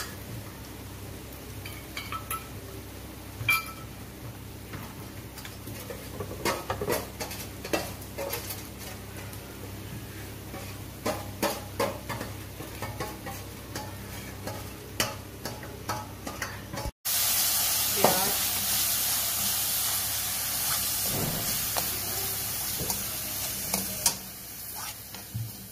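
Garlic-ginger paste frying in hot oil in a steel kadhai: a low sizzle with scattered sharp pops and crackles. About two-thirds of the way through it jumps to a much louder, steady sizzle as chopped onions fry and are stirred with a steel spoon.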